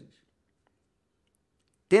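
Near silence: a pause of almost two seconds in a man's speech, his voice coming back with a sharp start just before the end.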